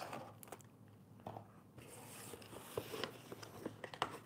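Faint handling sounds of product packaging: scattered light clicks, taps and crinkles as plastic-wrapped items and cardboard are moved about.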